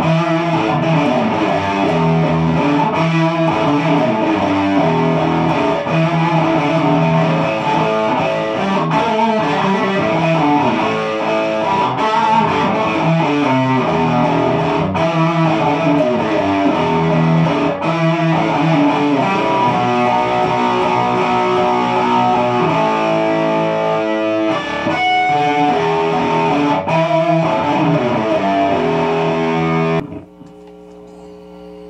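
Single-cutaway solid-body electric guitar played continuously through an amplifier, with melodic lines and sustained notes.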